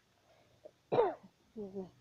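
A person clears her throat with one harsh, cough-like burst about a second in, followed by a brief hum of voice.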